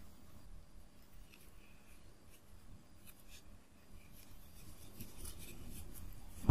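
Faint rustling and scratching of yarn and a crochet hook being worked through crocheted fabric, with a few soft ticks.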